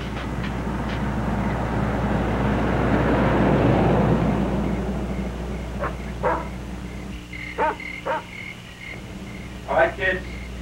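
A boy crying: a long breathy swell over the first few seconds, then short, catching sobs.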